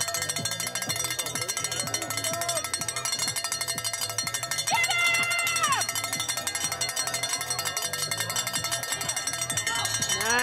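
A cowbell shaken rapidly and without a break, clanking in a quick even rhythm. About five seconds in a spectator lets out a short shout that falls in pitch.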